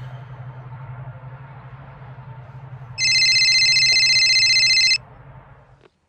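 An electronic telephone ringtone sounds loudly for about two seconds, starting halfway through, a bright rapid trill of high tones. Before it there is a low steady hum.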